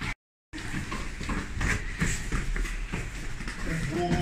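A brief cut to dead silence near the start, then the noise of a group training in a gym: feet and bodies shuffling and thudding on foam mats, with irregular small knocks and scattered indistinct voices.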